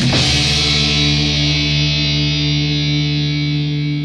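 A heavy metal band ends its song: one last hit right at the start, then distorted electric guitars and bass hold a single chord that rings on steadily and begins to fade near the end.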